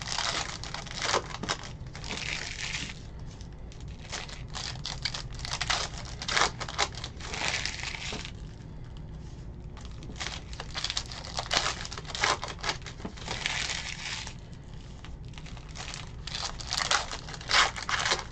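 Foil trading-card pack wrapper crinkling and tearing as it is opened by hand and the cards are pulled out. The crinkling comes in bursts every few seconds.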